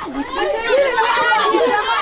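A group of children's voices shouting and chattering over one another, loud and continuous.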